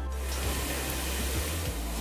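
Chopped onion sizzling in olive oil, a steady hiss, over background music with a low bass line.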